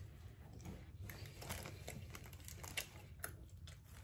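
Faint close-up chewing of a fried chicken nugget, with soft crunchy clicks scattered through it.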